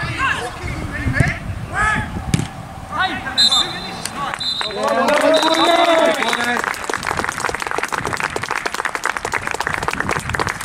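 Referee's whistle at full time, a short blast about three and a half seconds in and a longer one after it, among players' shouts. Clapping from spectators and players follows and runs on.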